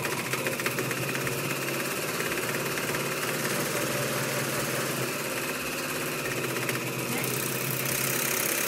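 Janome AirThread 2000D serger running steadily at an even speed, its needle and loopers stitching a fast, fine rhythm as it sews a three-thread seam along a folded cotton strip.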